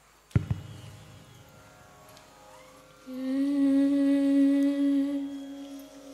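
A single sharp strike that rings on and slowly fades, then a voice holding one steady hummed note for about two and a half seconds, starting about three seconds in, at the opening of a group chant.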